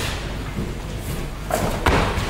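A weightlifter pulling a loaded barbell into a squat clean, with two sharp knocks in the last half second as the feet stamp onto the platform and the bar is caught on the shoulders.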